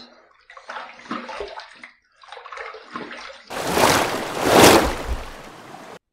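Water splashed onto the face from a bathroom sink, rinsing off shaving lather: softer splashing in the first half, then a louder stretch of splashing about halfway through that fades away.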